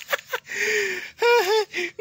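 A man's voice without words: short laughing breaths, then a breathy gasp and a brief voiced sound with a wavering pitch.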